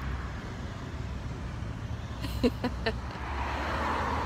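Steady outdoor background noise, a low rumble with hiss, with a few short faint sounds between two and three seconds in.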